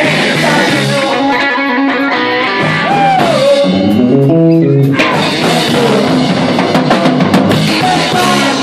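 Live rock band playing loudly: electric guitar, drum kit and a singer, with the full band coming back in about five seconds in.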